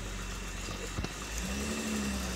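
Car engine idling with a steady low hum as the car creeps slowly past at walking pace, with one light click about halfway.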